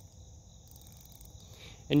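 Steady high-pitched chirring of crickets in the background, with a short word of speech at the very end.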